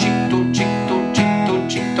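Steel-string acoustic guitar played in a steady rhythm, alternating a stroke on the bass strings with a strum on the treble strings, about two strokes a second.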